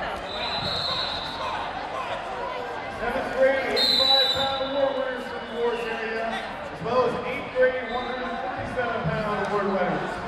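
Voices echoing in a busy gym, with a referee's whistle blowing twice: a short blast about half a second in and a stronger one about four seconds in, as the bout on the mat is stopped.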